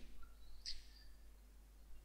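Quiet room tone with a low steady hum, and one faint short noise about three-quarters of a second in.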